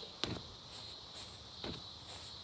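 Two dull thuds about a second and a half apart: kicks landing on a freestanding punching bag. A steady high insect buzz runs underneath.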